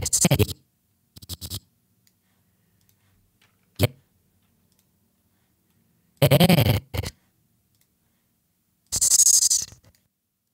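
Chopped fragments of a recorded voice line, the start of a spoken "Yes", played back in short stuttering bursts as an animation timeline is scrubbed back and forth, with silence between them. The last burst is a drawn-out hiss like the "s" of "yes".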